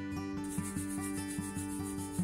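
Palms rubbing quickly together, a rhythmic hiss of about seven strokes a second starting about half a second in, over background acoustic guitar music.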